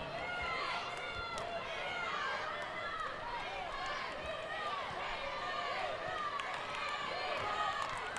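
Many short, overlapping squeaks from wheelchair tyres turning on a wooden basketball court, over a steady arena crowd hubbub, with a few light knocks.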